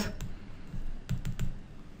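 Light clicks and taps of a stylus on a pen tablet during handwriting: a couple near the start, then a quick run of about four just after a second in.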